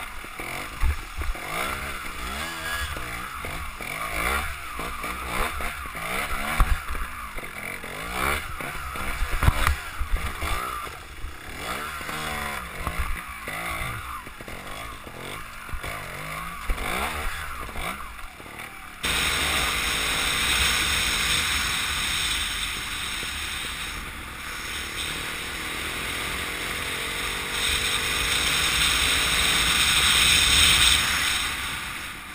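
Trials motorcycle engine revving up and down in quick bursts while it picks its way up a rocky stream bed, with knocks from the rocks. About two-thirds through it cuts suddenly to a steady rush of wind on the microphone as the bike rides along a road.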